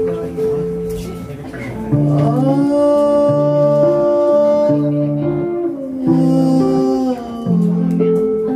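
Electric guitar music: a repeating low riff, over which a long held note slides up about two seconds in and slides back down near six seconds.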